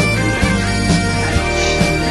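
Scottish dance-band tune led by bagpipes over a steady drone, with a drum beat a little over two beats a second.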